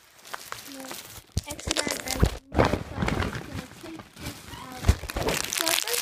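A plastic bag rustling and crinkling as hands rummage through it, in irregular crackles with a couple of louder sharp crinkles about two seconds in and near the end.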